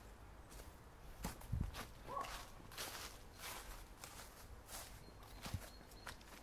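Footsteps on a garden path covered in fallen leaves and grass: faint, irregular steps.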